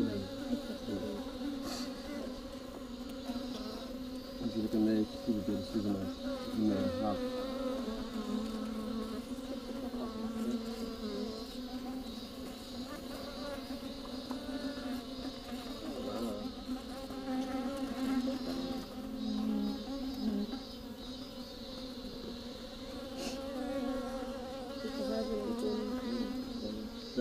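Many bees buzzing close to the microphone inside a hollow tree trunk: a steady drone with the pitch wavering as individual bees fly near and away. The bees are trapped in the trunk and trying to get out.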